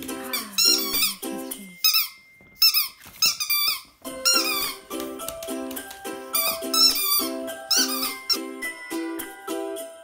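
Light background music of strummed ukulele chords with a steady beat, with a run of loud, high squeaks that bend up and down, several short bursts in a row, from a dog's squeaky plush toy being chewed.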